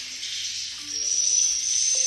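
Swiftlet calls fill a bare concrete swiftlet house as a dense, steady, high-pitched chatter. A few soft low musical notes sound under it, and a thin steady high tone comes in about a second in.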